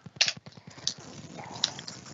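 Cardboard trading-card box being handled and opened by hand: three sharp clicks and snaps spread over the two seconds, with a faint rustle.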